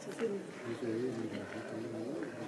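Indistinct voices of people talking at a distance, steady low chatter with no clear words.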